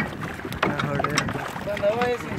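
People talking over a steady background noise of water and wind on a small boat.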